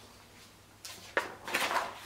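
Pages of a large picture book being turned by hand: a papery rustle begins just under a second in, with a sharp flick a little later and a denser rustle as the page settles.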